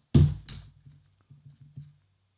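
Hand tapping and pressing keys on a laptop: one sharp tap just after the start, then a few fainter key clicks.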